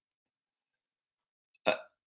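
Dead silence, then near the end one short, sharp intake of breath from a man about to speak again.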